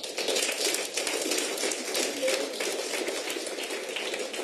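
Audience applauding: a sudden, dense, steady clatter of many hands clapping once the music has ended.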